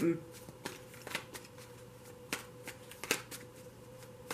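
Tarot cards being handled: a few irregular, light clicks of card against card, over a faint steady hum.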